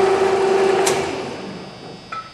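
Oster Model 784 pipe and bolt threader running its spindle under its 5 hp motor: a steady mechanical whine that fades away over the second half, with a sharp click about a second in.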